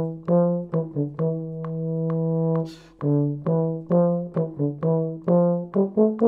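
Solo euphonium playing a run of short, separately tongued notes, then one long held note. A quick breath is taken a little before the halfway point, and the short notes resume.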